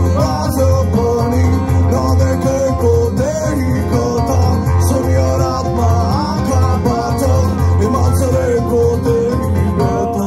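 A live band playing a traditional song: strummed acoustic guitars and keyboard over a steady pulsing bass, with a voice singing a gliding melody above them.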